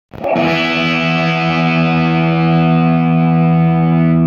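Gibson Les Paul played through a 1977 Marshall JMP 2204 head and a 4x12 cabinet loaded with WGS Green Beret speakers: one distorted chord struck just after the start and left ringing, its top end slowly dying away.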